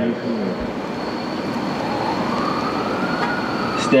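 Outdoor background rush with a distant siren: a slow wail that rises about two seconds in and sinks slightly near the end. A thin, steady high tone runs underneath.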